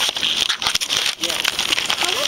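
Handling noise from a handheld camera's microphone rubbing and crackling against clothing: a dense run of scratchy clicks and rustle. Faint voices from the restaurant sit underneath.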